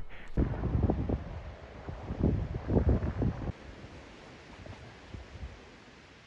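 Wind buffeting the camera's microphone in irregular, rumbling gusts that die down after about three and a half seconds.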